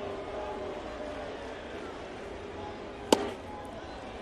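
Ballpark crowd murmur, with one sharp pop about three seconds in as a pitched ball, an 88 mph slider, smacks into the catcher's mitt.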